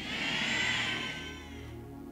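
Background music from the live band under the sermon: a steady low sustained chord, with a brighter swell that rises and fades away by about a second and a half in.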